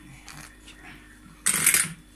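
Metal clattering from a manual lever-press citrus juicer: a sudden loud rattle of its steel parts about one and a half seconds in, lasting about half a second.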